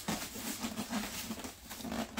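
A large styrofoam packing lid scraping and squeaking against the foam case as it is pulled up and off.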